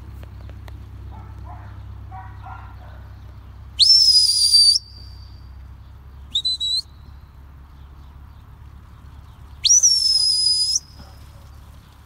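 Whistled commands to a working sheepdog. About four seconds in, a long whistle sweeps up and holds a high steady note for about a second. A pair of short pips follows, and near ten seconds another long whistle rises and holds in the same way.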